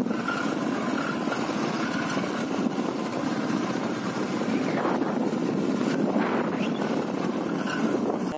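Motorcycle on the move: a steady, unbroken running and rushing noise of the engine and the ride.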